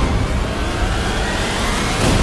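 A whooshing sound-effect swell with a deep rumble underneath, the kind of transition effect used in a TV title sequence.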